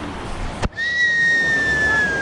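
Rushing river water, broken by a sharp click about a third of the way in, then one long whistled note that falls slightly in pitch and lasts about a second and a half.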